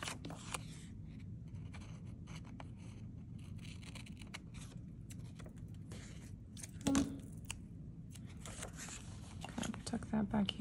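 Scissors snipping washi tape a few times, then paper being handled and rustling on the desk, over a steady low hum. A brief short voice sound comes about seven seconds in.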